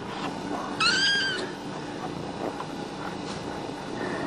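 A cat gives one short, high-pitched meow about a second in.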